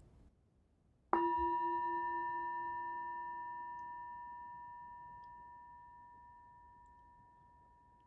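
A meditation bell struck once about a second in, ringing with several clear tones and fading slowly; the lowest tone dies away first. It marks the start of a guided meditation.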